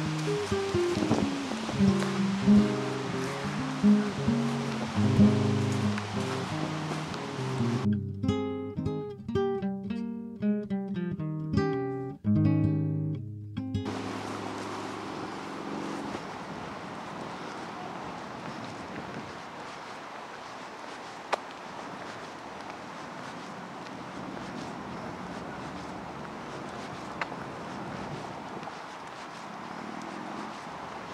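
Acoustic guitar music, plucked notes over a steady rushing noise. The guitar fades out about halfway through, leaving only the steady rushing noise.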